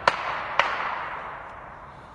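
Two gunshots about half a second apart, the second followed by a long rolling echo through the forest that fades away over the next second and a half.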